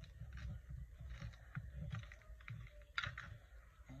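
Faint light taps and rustles of paper cut-outs being handled on a tabletop, with a louder paper rustle about three seconds in.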